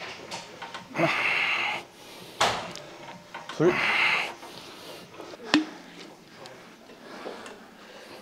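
Two forceful breaths out, about a second each, during reps on a plate-loaded row machine, with two sharp knocks from the machine in between.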